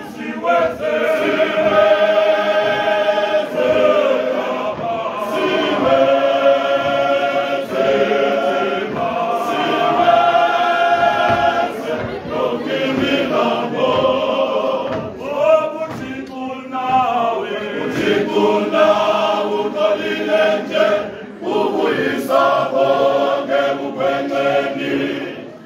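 Men's church choir singing a cappella in several-part harmony, holding chords in phrases of a second or two with short breaks between them.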